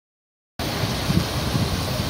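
Silence, then about half a second in a steady outdoor hiss starts suddenly, the open-air background of a park with a running fountain.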